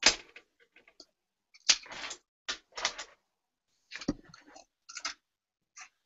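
Faber-Castell Polychromos white coloured pencil scratching on paper in short, irregular strokes, with a sharp click at the start.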